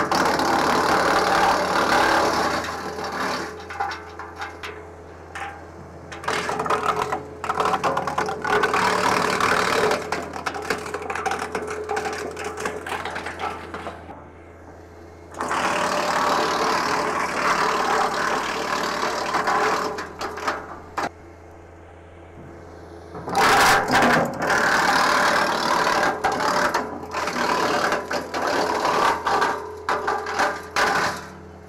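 Tractor PTO-driven wood chipper chewing up branches in four loud spells of a few seconds each, with the machine running steadily and quieter between feeds.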